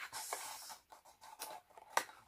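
Cardboard perfume carton being opened and the bottle slid out: faint scraping and rustling of card, with a short click near the end.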